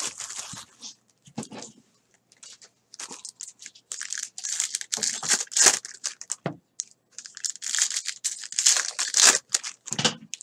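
Trading card pack wrappers being torn open and crinkled by hand, in irregular bursts of rustling and ripping with short pauses between.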